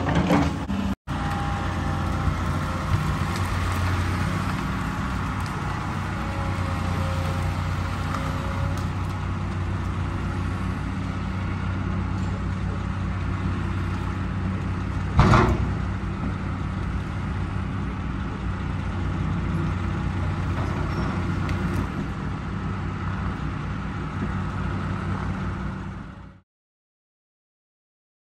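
Hydraulic excavator's diesel engine running steadily under work, with a single loud thump or crack about fifteen seconds in.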